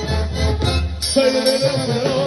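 Live Mexican banda music: tuba bass line under brass and percussion. About a second in the tuba drops out and a long note is held.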